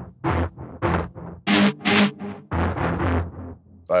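Native Instruments Straylight granular synth scanning quickly through a sample believed to be a timpani rub. It makes a stuttering run of short pitched bursts, about three a second.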